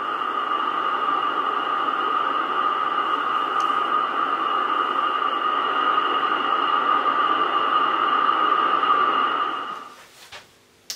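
Steady band noise and static from a homebrew octal-valve superhet communications receiver's loudspeaker, tuned on the 80 m band with no station coming through. The hiss is limited to the voice range by the 3.2 kHz filter and fades out near the end.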